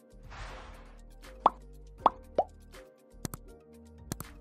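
On-screen subscribe-button animation sound effects over soft background music: a short whoosh, then three quick pops, then a pair of sharp clicks near the end.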